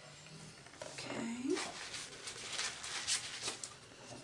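Rustling and scratchy handling noises start about a second in, with a short murmured vocal sound that rises and falls in pitch just after.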